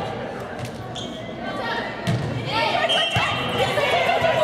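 Volleyball struck twice during a rally, once about two seconds in and again about a second later, echoing in a gymnasium amid players' and spectators' shouts.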